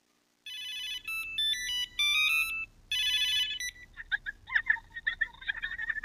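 Electronic ringtone of an incoming call on a tablet: a short melody of clean, stepped beeping notes that plays once and starts over about three seconds in. Fainter short chirping sounds follow near the end.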